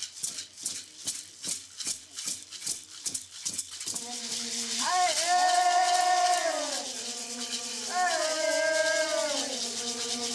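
A hand rattle shaken in an even beat of about three strokes a second; about four seconds in, a chanting voice comes in over it, holding long notes that bend up and slide down, in a Guarani Kaiowá ritual chant.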